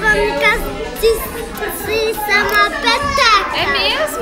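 Children's voices and chatter in a busy play area, with music playing underneath.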